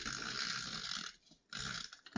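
Handheld adhesive tape runner drawn along the edges of designer paper, making a steady hiss. One stroke ends about a second in, and a second begins halfway through.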